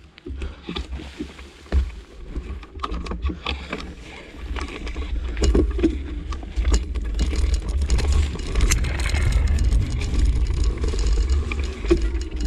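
Wind buffeting the microphone and trail noise from moving along a dirt forest path: a rumble that grows louder and steadier about four seconds in, with scattered clicks, crunches and rattles of ground and gear.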